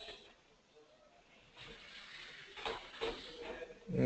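Faint hiss of an open online-meeting microphone, with a couple of soft clicks about three seconds in.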